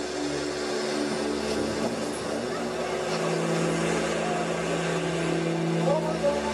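Live experimental rock band playing a droning noise passage: held electronic tones and a note pulsing about twice a second over a dense wash of noise, with a lower held note coming in about halfway through and stopping near the end.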